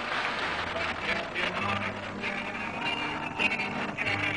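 Music with plucked string instruments over a noisy background.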